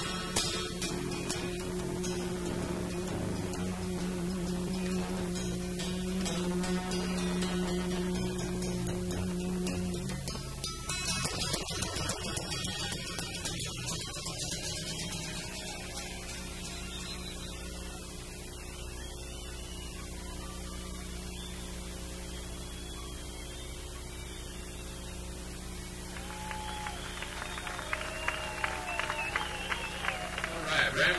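Acoustic guitar played solo, ringing chords that stop about ten seconds in. A steady electrical hum remains under the rest.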